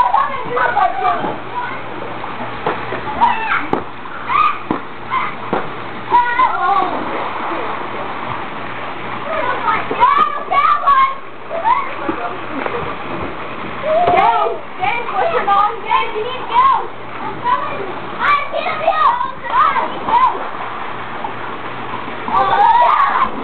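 Water splashing in a swimming pool, with children's voices calling and shouting throughout.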